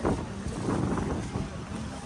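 Wind rumbling on the phone's microphone, with a faint steady hum underneath.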